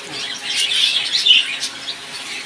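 Many small caged birds chirping and twittering together in a dense, high chatter, loudest through the middle.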